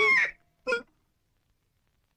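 A dog's high yelp tailing off just after the start, then one short yelp, as the dog is struck with an axe.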